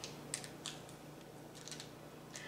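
Faint, short scratchy strokes of a felt-tip friction marker drawing on fabric, a few separate marks.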